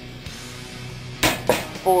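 Two sharp clacks about a quarter second apart, just past halfway, from a Kel-Tec Sub-2000 9mm carbine as it is unlatched and folded in half, the barrel swinging over onto the stock.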